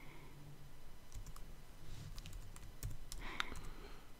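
Computer keyboard typing: scattered key clicks as code is entered, with a short breathy hiss about three seconds in.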